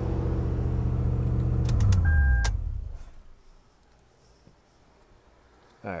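1999 Toyota Land Cruiser 100 Series engine idling high, which the owner puts down to a throttle position sensor needing adjustment. About two seconds in, the ignition is switched off: with a click or two and a brief electronic chime, the engine winds down in falling pitch and stops.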